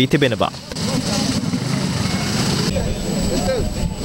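Busy wholesale vegetable market: a steady engine rumble from a vehicle, with many people talking indistinctly over it.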